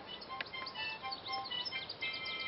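Small birds chirping: many short, high, quick calls. They sound over soft background music with held notes.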